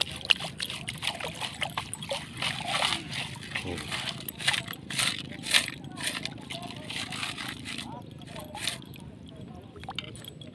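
Stainless-steel beach sand scoop lifted out of shallow seawater and shaken: water sloshing and draining out through its holes, with pebbles and shells clicking and rattling against the metal. The clicks come thick and fast and thin out near the end.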